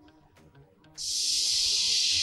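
Near silence, then a steady, high hiss that starts suddenly about a second in: the opening of a five-second song clip played for the contestants to guess.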